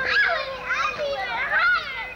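Young children's high-pitched voices calling out in quick rising and falling cries while playing on a tire swing, with no clear words.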